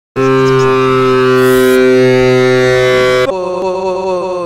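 A loud, held electronic drone of several steady pitches sounding together. About three seconds in it breaks into tones that slide downward in pitch.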